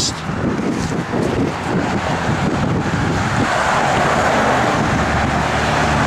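Big-block 598 cubic-inch V8 idling, heard at the tailpipe of its 3½-inch Flowmaster dual exhaust, with wind buffeting the microphone.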